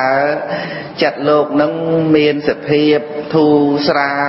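A man chanting a Buddhist dhamma text in Khmer in a melodic intoning style. He holds long, level notes in phrases of about a second each, with short breaks between them.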